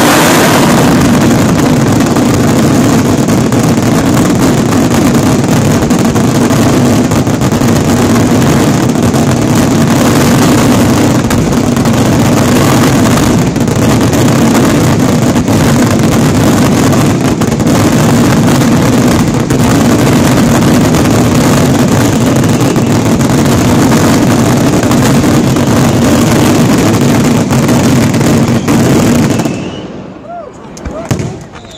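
Fireworks finale: a continuous, dense barrage of aerial shell bursts, so loud that it overloads the phone's microphone into a steady wall of noise. It cuts off abruptly near the end.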